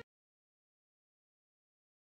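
Silence: the sound track is empty after the music cuts off sharply at the very start.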